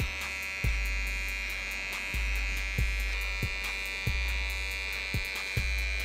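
Wahl detailing trimmer buzzing steadily as it cuts a line into short hair behind the ear, with background music and a low beat underneath.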